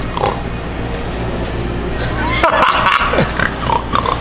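A man's voice imitating a pig: pig noises made by mouth, loudest in a run of falling snorts and oinks through the second half.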